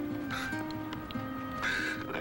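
Soft background drama score with long held notes. A man's voice breaks in twice with short, strained sounds, about half a second in and again near the end.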